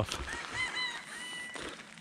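A bird calling: a few short, clear, arching notes in quick succession, then a longer held note, over faint outdoor background noise.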